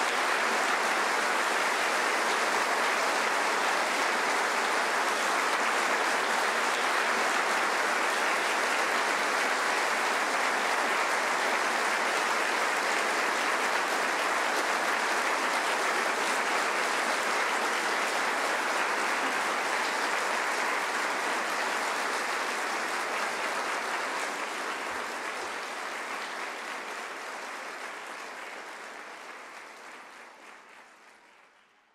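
Audience applauding, a dense, steady clapping that fades out over the last several seconds.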